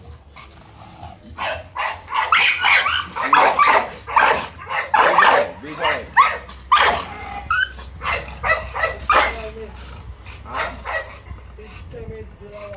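Pit bull barking loudly in a long run of short barks, starting about a second and a half in and thinning out near the end.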